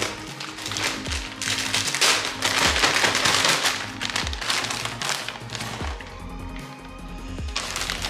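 Plastic bag of shredded cheese crinkling and rustling as cheese is shaken out of it, loudest in the first half, over background music with a steady beat.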